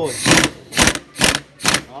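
Impact wrench run in four short bursts, about two a second, tightening the clutch hub nut while the hub is held still by hand.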